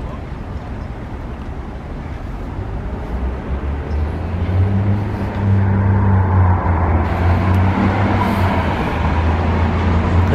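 Street traffic noise with a motor vehicle's engine running close by. About halfway through it grows louder into a steady low hum.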